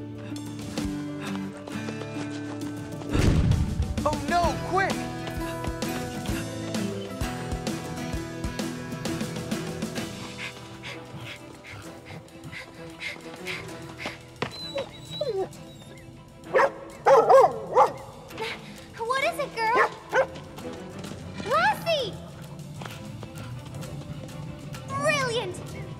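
Cartoon score music plays throughout, with a deep thump about three seconds in. In the second half a dog barks in several short bursts, the barks bending in pitch.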